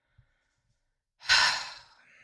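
A woman lets out a single heavy sigh a little over a second in, a breathy exhale that fades away.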